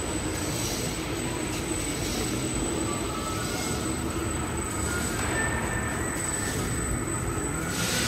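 MSHQJ-B paper crosscutting (roll-to-sheet) machine running, its rollers turning as the printed paper web unwinds off the mother roll: a continuous mechanical rumble with a thin, steady high whine.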